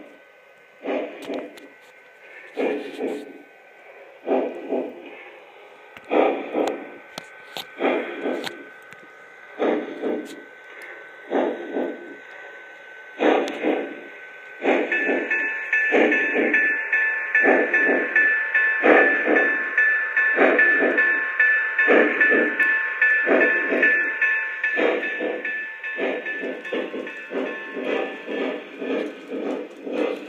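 Lionel Union Pacific Challenger model steam locomotive's onboard sound system, with steam chuffs slow and evenly spaced as it pulls away, quickening toward the end. About halfway through a long steam-whistle blast starts and holds until near the end.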